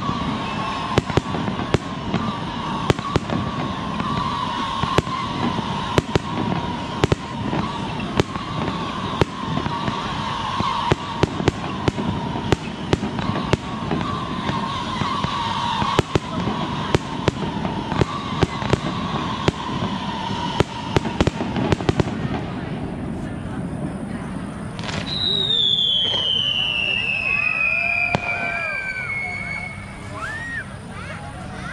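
Fireworks display: a rapid run of sharp bangs and pops, with a steady tone under them, for about twenty-two seconds, then thinning out. A long falling whistle follows near the end.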